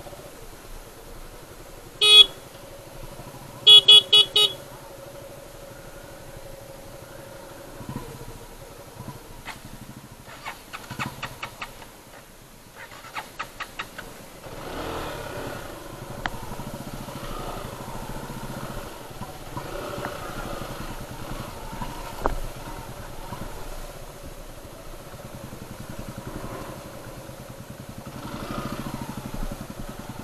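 Motorcycle horn honking: one short honk, then a quick run of about four short toots a second and a half later. Under it a motorcycle engine runs at low speed on a muddy trail. Runs of rapid ticking come in the middle, and a steadier engine and riding noise follows for the second half.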